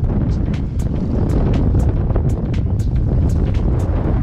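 Strong wind buffeting the microphone of a camera on a paddle board, a loud steady rumble, with frequent short splashes of small choppy waves against the board.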